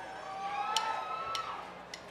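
Concert hall lull between songs: a faint drawn-out call or two from the audience over the room's murmur, with three sharp ticks about half a second apart.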